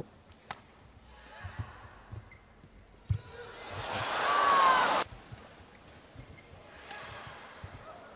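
Badminton match sound: a few sharp racket hits on the shuttlecock and light footwork on the court. About three seconds in, crowd noise swells, with a brief squeal like a shoe on the court floor, and the noise cuts off abruptly about five seconds in.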